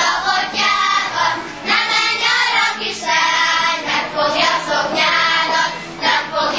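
A group of young girls singing a Hungarian folk song together, the singing that accompanies a ring dance, phrased in a steady rhythm.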